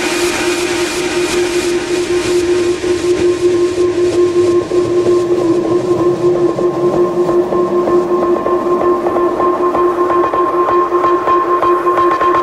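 Electronic house track in a sparse passage: two steady held synth tones over a fast, dense ticking rhythm, growing a little fuller after a couple of seconds.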